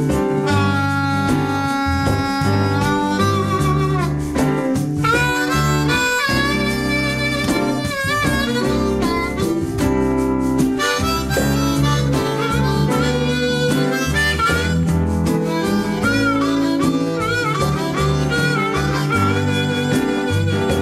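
Blues harmonica solo played into a microphone, with wavering, bent notes, over a band's bass, guitar and piano backing.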